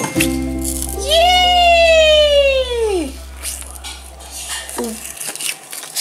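Music-like sound effect: a held low tone, with a long sliding note about a second in that rises briefly and then falls in pitch for about two seconds.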